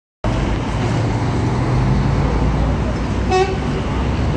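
Street traffic noise with a steady low vehicle rumble, and a brief car horn toot near the end.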